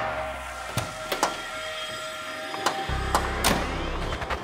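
Background music with held notes and a few sharp percussive hits; a low rumble comes in about three seconds in.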